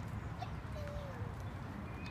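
Steady low outdoor background rumble, with one faint short pitched call a little before the middle.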